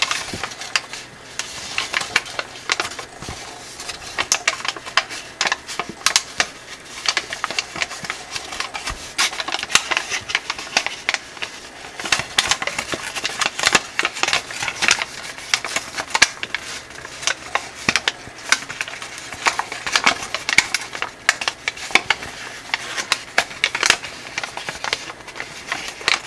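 Thin gold foil paper crinkling and rustling under the fingers as it is folded and creased into an origami star, with many crisp crackles in quick, irregular succession.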